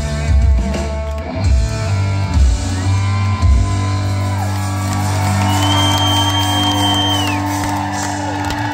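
Live country-rock band ending a song: drum hits on the beat for the first few seconds, then a final chord held ringing on electric and acoustic guitars. A long high whistle sounds over the held chord near the middle.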